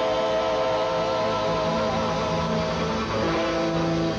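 Live bolero trio music: acoustic guitars playing the closing bars of the song with long held notes, a chord fading about a second and a half in and lower notes held after it.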